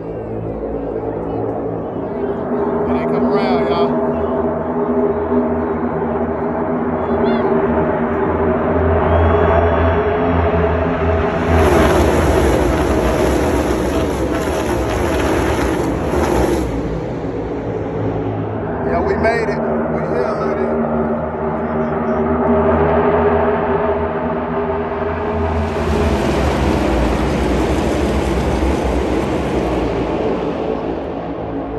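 A pack of NASCAR stock cars' V8 engines passes on the track twice: once about twelve seconds in, lasting some five seconds, and again near the end. Under it runs background music with steady, held notes.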